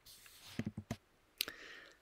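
A few faint clicks in a pause between speech: a quick cluster of three or four just before a second in, then one sharper click about halfway through, over faint hiss.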